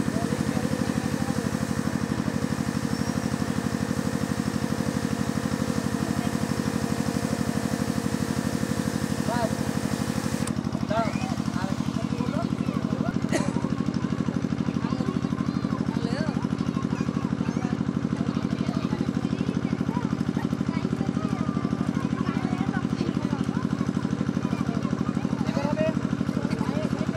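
A small engine running steadily with an even, unchanging drone. Faint voices can be heard in the background.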